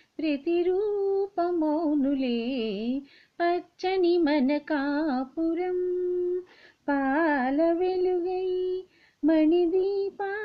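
A woman singing a melody alone, without instruments. Her notes waver with vibrato, a few are held long and steady, and short breaks for breath come about three, seven and nine seconds in.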